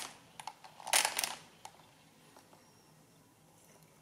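Crank of a Thales A pinwheel mechanical calculator turned anticlockwise for a subtraction: a few light mechanical clicks and one short, loud rattle of the mechanism about a second in.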